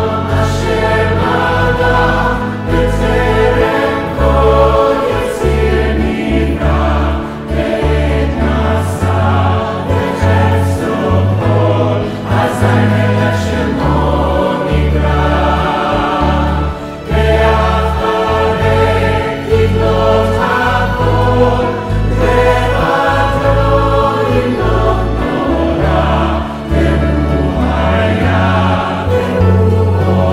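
A mixed choir of many men's and women's voices singing a Jewish liturgical song, mixed together as a virtual choir from separate home recordings, over a produced backing track with a strong, pulsing bass line.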